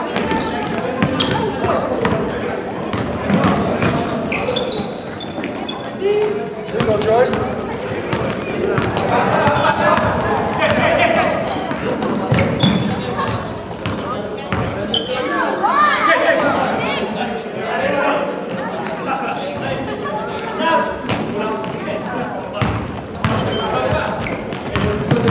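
Basketball game sounds in a large gym: the ball bouncing on the hardwood floor, sneakers squeaking, and players and spectators calling out.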